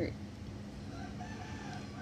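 A rooster crowing faintly in the background: one drawn-out, slightly wavering call that begins about half a second in, over a steady low hum.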